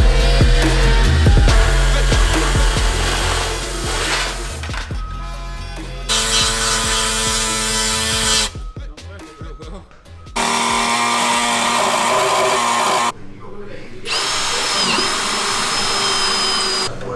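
Power drill boring through the sheet-metal front guard of a Nissan Navara in several separate bursts, the motor pitch dipping briefly as it bites near the end. Background music plays under the first few seconds.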